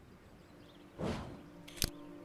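A faint rush of noise about a second in, then a single sharp click near the end, over low hiss and a faint steady hum.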